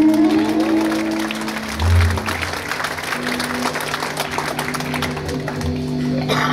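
The band's last chord on electric guitars and bass rings out and fades in the first second and a half, with a low thump about two seconds in. Then audience applause continues, over a steady low hum.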